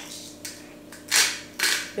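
A hand-twisted spice grinder grinding seasoning over a bowl, in two short rasping bursts a little over a second in and near the end.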